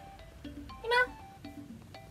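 A cat's single short meow about a second in, over light background music of plucked notes.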